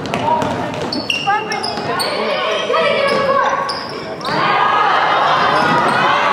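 Basketball being dribbled on a hardwood gym floor, with sharp repeated bounces, short high sneaker squeaks and spectators talking and calling out in a large echoing hall. The crowd gets louder about four seconds in.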